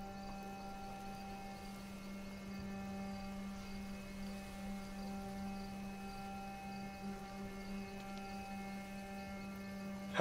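Steady electrical hum: a constant low buzz with a ladder of higher steady overtones, unchanging throughout.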